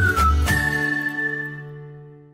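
Short cartoon logo jingle: a high gliding whistle-like melody over bass beats, ending on one long held note and chord that fades away.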